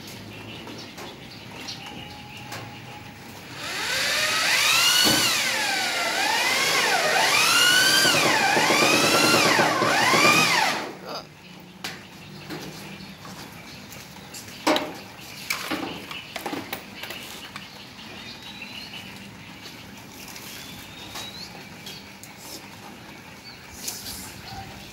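Corded electric drill running under load for about seven seconds, its motor pitch repeatedly rising and dropping as the bit bites, then stopping abruptly; a few sharp knocks follow.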